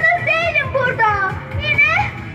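A young girl's high voice reciting a poem in Turkish, in drawn-out phrases that rise and fall in pitch.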